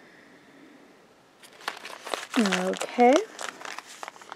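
Plastic sample sachet crinkling as it is handled and set down, starting about a second and a half in as a run of sharp crackles. Two short wordless vocal sounds come in the middle of it.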